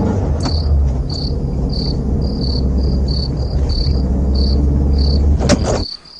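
Crickets chirping in short, high chirps about twice a second, over a low car-engine rumble that stops shortly before the end. A sharp click comes near the end.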